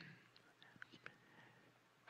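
Near silence in a pause between spoken phrases, with a few faint short clicks in the first second.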